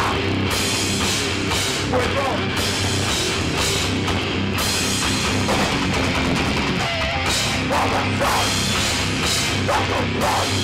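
Hardcore punk band playing live: distorted electric guitars and bass over a drum kit with crashing cymbals, at full volume.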